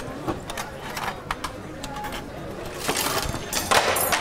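School canteen clatter: scattered light knocks and clicks, with children's voices getting louder near the end.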